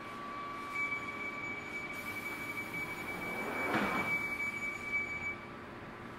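London Underground Northern Line train's sliding passenger doors closing at a station, with a steady high-pitched door-closing warning tone that stops about five seconds in. A brief rush of noise about four seconds in as the doors come together.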